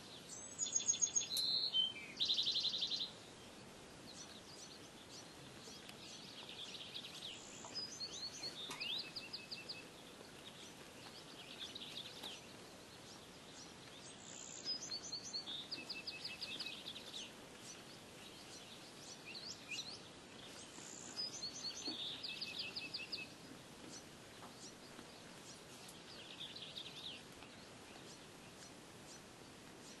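A songbird singing the same song again and again, a phrase of quick high trills roughly every six or seven seconds. The loudest phrase comes about a second in. Under it runs a faint steady hiss of outdoor background.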